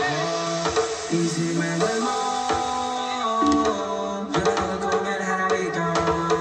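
House/techno DJ mix playing: a melody of held notes that step and slide in pitch over drum hits.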